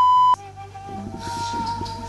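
A loud, steady single-pitch censor bleep that cuts off abruptly about a third of a second in, covering a spoken word. Soft background music with held notes continues after it.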